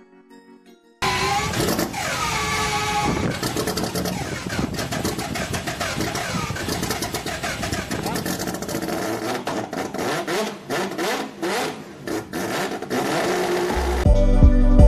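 Car engine starting suddenly about a second in, then running and revving, with a run of sharp cracks near the end.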